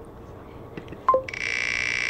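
Spinning-wheel sound effect from an online number picker, played through computer speakers: a short falling blip about a second in, then a steady buzzy tone as the wheel spins.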